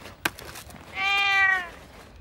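A cat meowing once, about a second in: a single drawn-out call that dips in pitch as it ends. A short click comes just before it.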